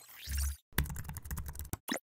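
Computer keyboard typing sound effect: a quick run of keystrokes lasting about a second, as text is entered in a search bar, then a single click near the end. It opens with a short sweeping sound over a low bass note.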